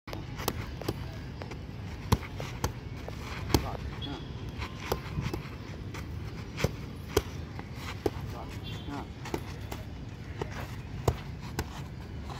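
Boxing gloves striking a coach's focus mitts: sharp slaps at an uneven pace, roughly one a second, a few landing harder than the rest.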